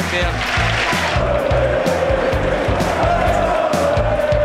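Background music with a steady beat, over stadium crowd noise from the match.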